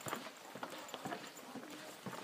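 Faint footsteps on a hard floor: a few soft, irregularly spaced clicks and knocks.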